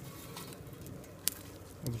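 Quiet outdoor background with a single sharp click about a second and a quarter in; a voice starts just at the end.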